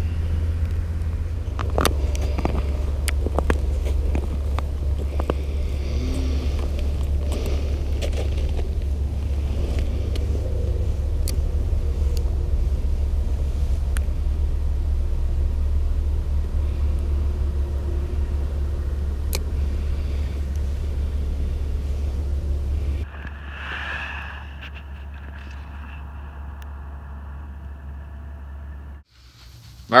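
Wind buffeting the camera microphone outdoors, a steady low rumble, with scattered sharp clicks and ticks over it. About three quarters of the way through it drops to a quieter, thinner hiss.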